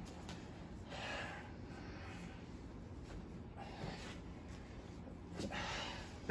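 A few faint, noisy breaths from people straining while grappling on a mat, the strongest near the end.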